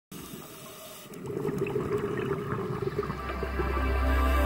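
Underwater ambience picked up through a dive camera's housing: a dull rushing water noise that grows louder about a second in, with faint scattered crackles. A low steady music drone fades in near the end.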